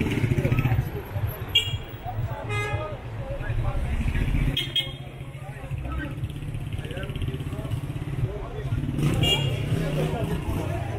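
Busy street ambience: a motorcycle engine running low as the bike rides slowly through the crowd, with passers-by talking. Several short toots come through about one and a half, two and a half, four and a half and nine seconds in.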